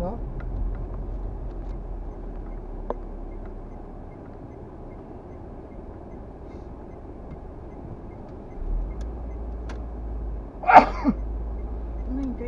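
Car engine and road rumble heard inside the cabin while creeping at low speed, the low rumble getting stronger about two-thirds of the way in. Near the end, a short, loud burst of a person's voice inside the car.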